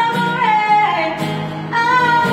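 A woman singing a country song live into a microphone while strumming an acoustic guitar, holding long notes that slide down in pitch.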